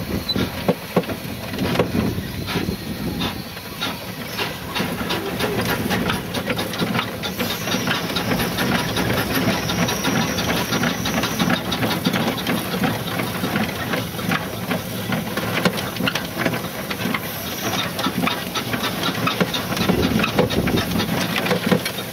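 1911 Stanley Steamer steam car under way: a steady steam hiss with a dense, irregular patter of mechanical clicks and rattles as it drives along.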